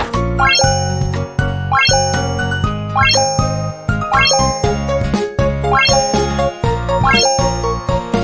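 Upbeat background jingle music: quick rising runs of bright high notes repeat a little more than once a second over a steady pulsing bass beat.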